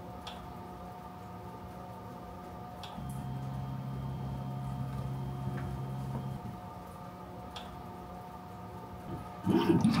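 Makera Carvera Air desktop CNC machine humming steadily while it runs its XYZ touch-probe routine. For about three seconds in the middle its axis motors drive the spindle head over to the workpiece corner with a low, steady motor tone, and there are a few light clicks.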